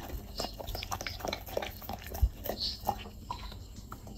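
A dog licking and chewing the last crumbs off a ceramic plate: irregular wet mouth clicks and smacks, with a dull knock about two seconds in.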